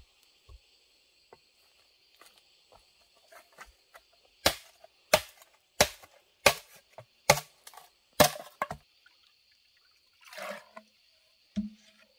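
Six sharp chopping strikes into wood, about one every two-thirds of a second, with a few lighter knocks around them and a short rustle afterwards. A steady high buzz of insects runs underneath.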